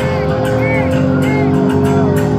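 Live rock band through a festival PA holding sustained notes, with a light regular ticking on top, as a song gets under way; heard from within the crowd.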